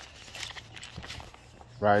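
A few soft footsteps on a hard floor over a low steady hum, with a man's voice starting near the end.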